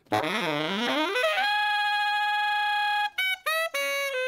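Recorded saxophone track played back heavily compressed: a phrase of scooping, sliding notes, then a long steady held note for about a second and a half, then a few short, detached notes near the end.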